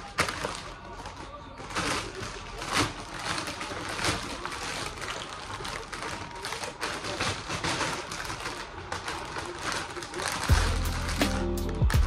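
Plastic packaging crinkling and rustling, with small clicks and knocks, as plastic-wrapped toy parts are pulled out of a cardboard box. Electronic music with a steady beat comes in near the end.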